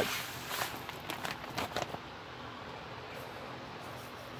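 Handling noise: a run of short, crackly ticks and rustles from the plastic bag of sodium nitrate crystals and the glass beaker being moved, over the first two seconds, then only faint background.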